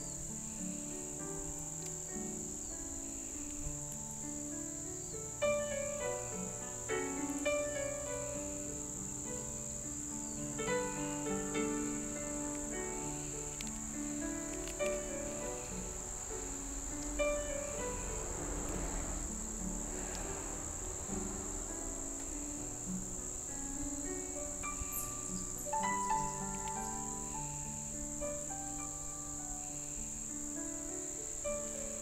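Steady high-pitched chirring of crickets, under instrumental background music moving from note to note.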